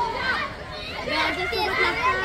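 Many high young voices shouting and calling over one another, the calls and cheers of players and onlookers at a kho kho game.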